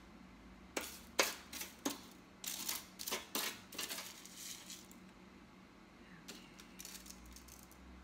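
A metal utensil and a wire baking rack clicking and clinking against each other and a foil-lined sheet pan: a run of sharp taps from about a second in to about four and a half seconds, then a few fainter taps near the end.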